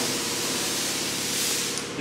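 Steady loud hiss, like rushing air, that cuts off suddenly near the end.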